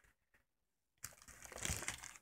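Plastic sheet protectors in a ring binder rustling and crinkling as a page is turned, starting about a second in.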